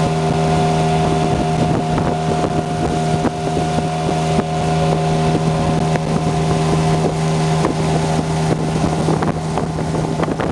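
A motorboat's engine running steadily at speed, a constant hum over the rush of water from the wake. The engine note weakens in the last second or so.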